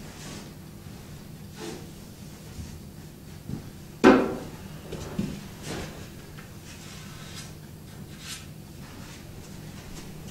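Snooker balls and cue being handled on the table: a few light knocks and clicks, with one sharp clack about four seconds in that rings briefly.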